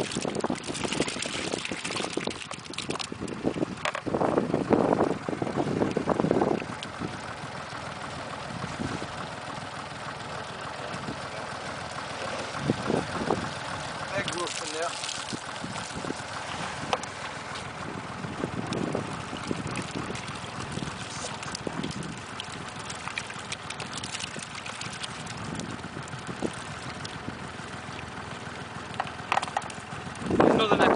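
Water splashing and dripping as netfuls of roach are scooped from a tank and tipped from a landing net into a tub of water, over steady wind noise on the microphone. The splashing comes in irregular bursts, loudest near the start and again about four to six seconds in.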